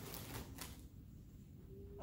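Quiet room tone, with a faint soft rustle in the first half second.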